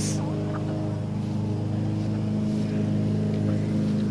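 A motor engine running steadily at one even pitch, a constant low drone with no change in speed.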